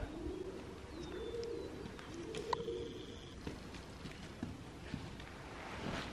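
Faint, low cooing of a bird, three soft coos in the first half, with a brief high chirp about a second in.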